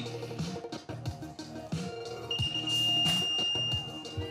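Background music with a steady beat; about two seconds in, an electronic start-gate tone sounds one long, high, steady note for about two seconds, the signal for the riders to go.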